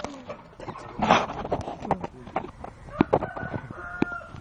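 A rooster crowing, with scattered sharp clicks and knocks.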